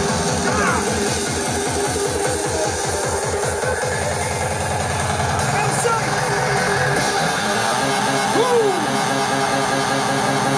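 Hardstyle DJ set played loud over a festival sound system, recorded from the crowd: a fast, driving kick-drum beat that drops out about six seconds in, leaving the synth parts, with crowd voices and shouts over the music.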